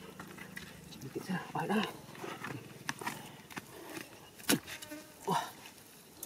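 Hands working wet mud around a water-filled burrow: scattered squelches, scrapes and sharp knocks, the loudest about four and a half seconds in, over a faint low buzz.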